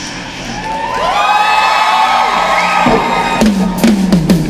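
Live concert crowd cheering and whooping while the drum kit drops out, with long high calls that rise and hold for a couple of seconds. The drums and band come back in near the end.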